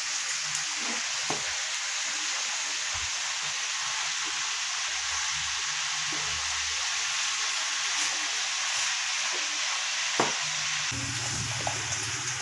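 Food frying in a pan: a steady sizzling hiss.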